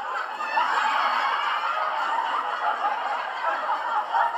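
Canned crowd laughter: many people chuckling at once, a continuous mass of laughter that starts suddenly just before.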